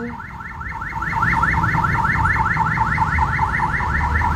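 Electronic alarm siren sounding a fast run of rising chirps, about seven a second, getting louder about a second in, over a low traffic rumble.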